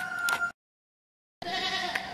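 Faint outdoor background noise with a thin steady tone, cut to dead silence for almost a second about half a second in, then resuming faintly.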